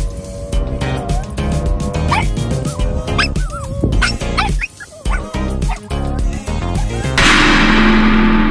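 Small pet dogs yipping and whining in short rising and falling cries, excited at the sight of a cat, over background music with a steady beat. About seven seconds in, a loud crash sound effect hits and rings on, fading out.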